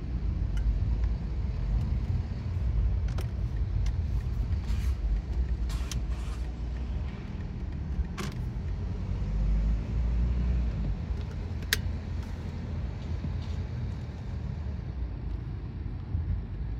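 Steady low rumble of a car driving, heard from inside the cabin, with a few short clicks and ticks scattered through it.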